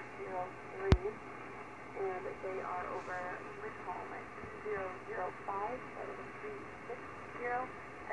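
Aeronautical HF voice radio traffic on 11.330 MHz upper sideband, heard from a Kenwood TS-950SDX receiver's speaker. Indistinct, thin-sounding voices come in snatches over steady band hiss. One sharp click about a second in is the loudest sound.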